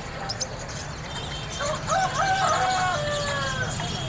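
A rooster crows once, starting about halfway through: a few stepped notes and then a long, slowly falling held note. Faint short high chirps and a steady low hum lie underneath.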